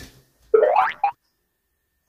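A cartoon 'boing'-style swoop sound effect that rises in pitch for about half a second, then a short blip, then dead silence for about a second.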